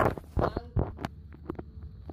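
Hands fumbling with a small object inside a cardboard box close to the microphone: a series of dull knocks and thumps, the loudest right at the start, over a low rumble of handling noise.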